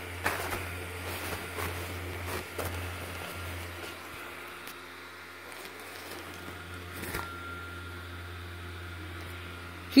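Airblown inflatable's built-in blower fan running steadily with a low hum, with a few soft clicks and rustles in the first few seconds.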